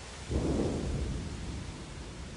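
A clap of thunder rolls in suddenly about a third of a second in and fades over a second and a half, over a steady hiss.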